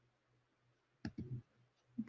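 Three soft, quick clicks about a second in, over faint room tone.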